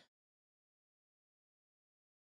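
Dead silence: the sound track drops to nothing.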